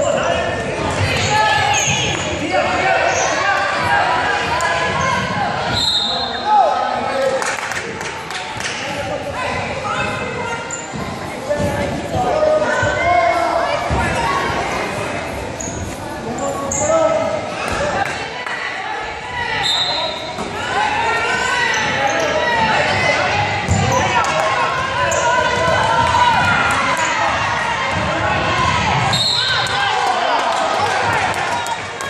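A basketball bouncing on a gym's hardwood floor during play, with many voices from players and spectators echoing in the hall.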